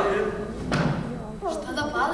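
Actors' voices speaking on a stage, with one dull thump about a third of the way in.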